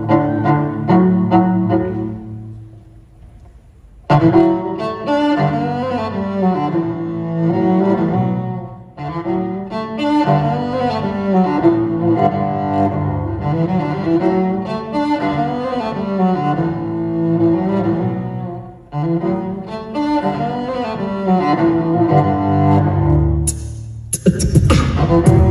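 Solo cello playing a melodic piece: a few notes at the start, a brief lull about two seconds in, then fuller, continuous playing from about four seconds in.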